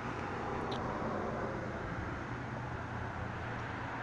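Steady low background noise: a faint even hum and hiss, with one faint short tick a little under a second in.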